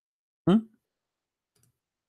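A man's brief vocal sound, one short syllable falling in pitch, about half a second in, then a faint click about a second later.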